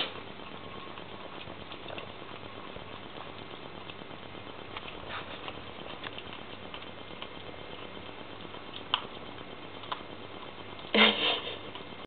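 Kittens eating fresh meat: faint chewing and smacking ticks over a steady low hiss, with two sharper clicks late on. A brief louder noise comes about a second before the end.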